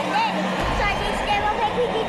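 Indistinct speech over background music, with a low music bed coming in about half a second in.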